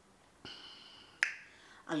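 During a pause in speech, a soft breath and then a single sharp click a little over a second in.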